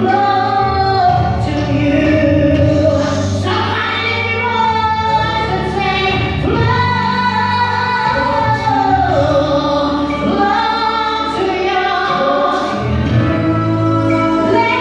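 A woman singing a gospel praise-and-worship song into a handheld microphone, holding long notes and sliding between them, over a musical accompaniment with a steady low bass.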